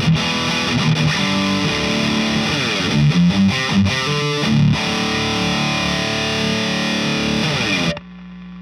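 Electric guitar played through a Mesa/Boogie Single Rectifier Rectoverb 50 tube amp head on its Modern channel, fitted with the Legendary Tones Mr. Scary hot mod and pushed by a Dirty Tree overdrive pedal: heavy distorted riffing with fast chugging notes midway and held notes after. It stops abruptly near the end.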